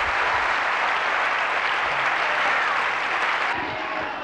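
Audience applauding steadily, the clapping falling away shortly before the end.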